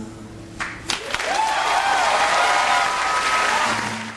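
Crowd applause that builds about a second in after a couple of sharp claps, then fades near the end.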